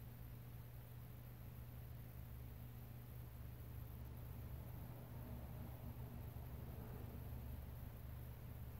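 Quiet room tone with a steady low hum; no distinct sound stands out.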